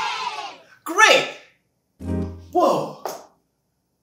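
A short sound-effect cue: a low, steady buzz about two seconds in, lasting under a second, with brief vocal exclamations around it. The cue signals the start of a timed freestyle dance segment.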